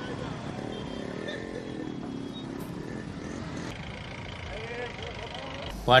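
Motorcycles in a rally running slowly along a road, with voices in the background.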